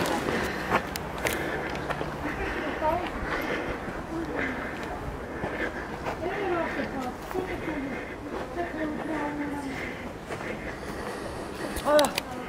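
Indistinct talk of several people in a group, softer than a close voice, with no single speaker clear.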